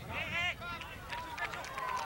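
Distant voices shouting and calling across an open soccer field from players and spectators, with a couple of high-pitched shouts in the first half second and scattered calls after.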